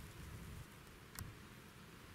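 Near silence: faint low rumble of outdoor room tone, with one short sharp click a little over a second in.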